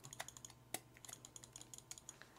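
Braille stylus punching dots through paper clamped in a metal braille slate: a run of quick, faint, irregular clicks.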